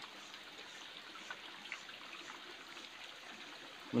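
Faint trickle of stream water running over rocks, a low steady wash.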